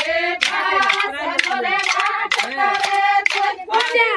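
A group of women singing a Banjara Holi folk song together, with sharp percussive strikes keeping a steady beat about twice a second.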